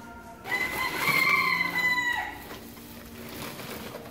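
A rooster crowing once: a single loud call of a little under two seconds that ends in a falling note.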